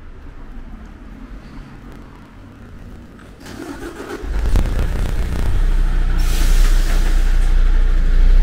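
A motor vehicle's engine starting about four seconds in and then idling steadily, with a brief hiss around six seconds in.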